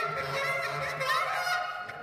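Bass clarinet and voices in a dense, layered contemporary chamber texture, with a short upward glide about a second in. The sound thins out near the end.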